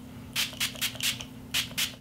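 Fine-mist pump spray bottle of rose facial primer water being spritzed at the face in quick repeated pumps, about eight short hisses, roughly four a second.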